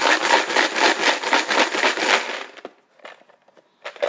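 Green plastic raffle box being shaken hard, the numbered draw pieces inside rattling densely against its walls. The rattle stops about two and a half seconds in, leaving a few faint clicks.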